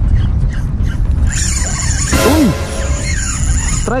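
Strong wind buffeting the microphone, a steady low rumble, with a brief high squeal about a second and a half in.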